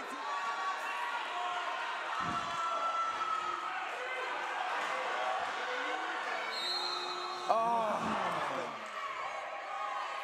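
Game sound in a wheelchair basketball hall: crowd and player voices with a basketball bouncing on the hardwood. A low thud comes about two seconds in, and a sharp knock about seven and a half seconds in is followed by a voice calling out.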